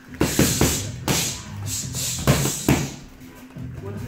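Boxing gloves smacking into handheld punch mitts in quick combinations: a rapid flurry in the first second, then two more sharp hits a little over two seconds in. Background music with a steady beat plays throughout.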